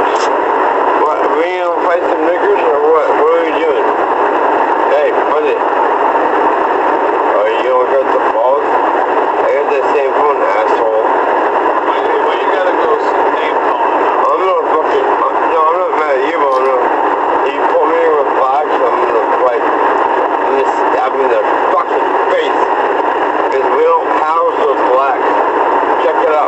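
Indistinct, unintelligible talking over a constant hiss, thin and narrow-sounding as if heard through a radio or a recording system's small speaker.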